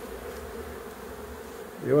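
A large swarm of Africanized honey bees buzzing with a steady, even hum as it crawls over the hive boxes and moves into the new hive.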